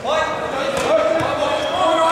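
Several people shouting around a kickboxing bout, with a few dull thuds from gloved punches and kicks or footwork on the mat.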